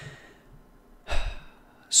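A man's audible breath, a short noisy sigh or intake of breath about a second in, close to the microphone between sentences.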